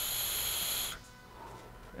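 A draw on an Aspire NX75 sub-ohm tank on the Evo75 mod: a steady hiss of air pulled through the tank's airflow as the coil fires, with a thin whistle in it. It cuts off suddenly about a second in.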